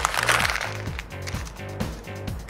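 Paper being crumpled by hand into a ball, a dense crackling for about the first half-second, over background music.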